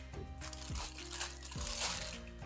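Thin plastic bread bag crinkling as it is handled and pulled around a dough log, over quiet background music with held notes.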